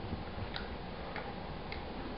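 Three soft, clock-like ticks a little over half a second apart, imitating the second hand of a clock.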